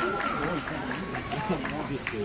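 Indistinct voices of spectators talking, with a faint steady high tone in the first half second.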